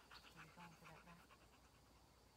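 Faint, quick panting of a Shepinois dog (German Shepherd–Malinois mix), with a few short, low breathy pulses in the first half.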